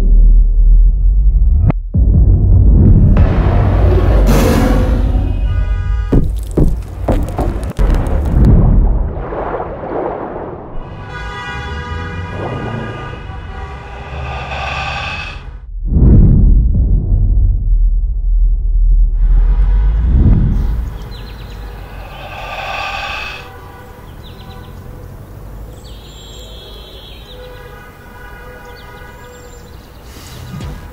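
Cinematic sound-design sequence built only from stock sound effects: deep booms and rumbles, whooshes and sharp impacts, and swelling pitched tones. It is loudest in the first two-thirds, with a heavy boom about sixteen seconds in, and quieter toward the end.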